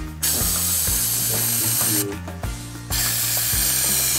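Aerosol spray paint can spraying onto a water surface: a long hiss of about two seconds, a pause of under a second, then a second hiss.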